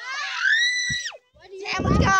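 A child's high-pitched scream, rising and then held for about a second before breaking off; after a short pause another loud yell starts near the end.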